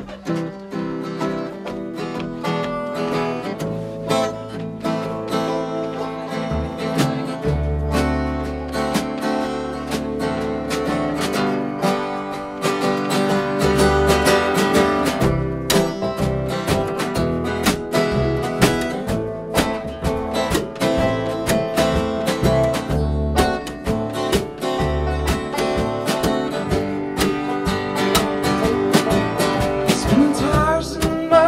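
Instrumental intro of a live folk song: strummed acoustic guitar with banjo, and an upright bass that comes in with low notes about seven seconds in.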